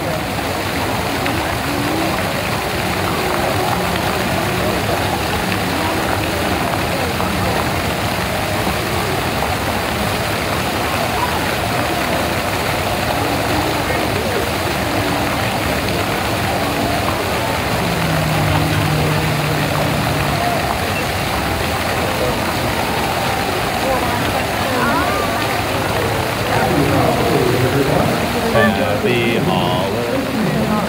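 Steady babble of a large crowd, many voices talking at once with no single voice clear, and a nearer voice briefly rising out of it near the end.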